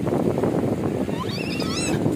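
Wind buffeting the microphone over the wash of small waves on a sandy shore, a steady rushing noise. Near the end a brief high-pitched, rising vocal sound cuts in.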